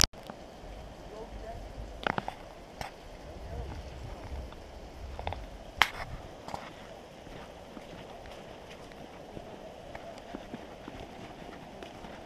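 Footsteps on a dirt forest trail with a few sharp snaps and scuffs, over a steady rush of water from a waterfall close ahead.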